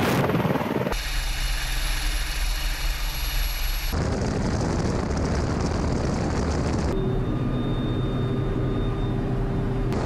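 Russian Mi-28 attack helicopters in low flight: steady rotor and turbine noise with a high whine over it, the sound changing abruptly about one, four and seven seconds in.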